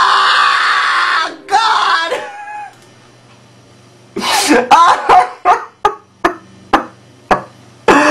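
A man screaming: one long loud scream, then a shorter one. After a pause of about a second and a half, a run of short, sharp yells and shrieks follows.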